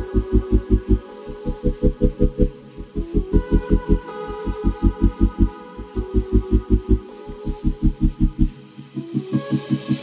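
Electronic background music: a fast, even pulsing bass, about seven pulses a second, under held synth chords. The bass pulses drop out near the end.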